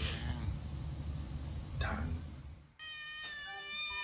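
A domestic cat meowing twice over a steady low outdoor rumble. About three seconds in, steady held musical tones begin.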